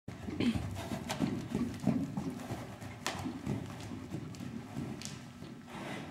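Hoofbeats of a Welsh Cob moving loose on sand arena footing: a run of dull, uneven thuds, loudest in the first couple of seconds and then fading, with a few sharper clicks.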